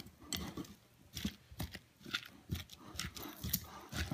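A kitchen utensil knocking and scraping against a bowl as guacamole is mixed: an irregular run of light knocks, roughly three a second.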